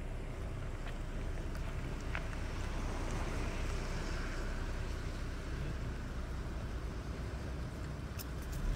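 A vehicle engine idling steadily, a low rumble under an even hiss.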